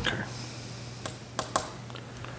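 A few light, sharp clicks, three close together about a second in, over a steady low hum in a quiet room.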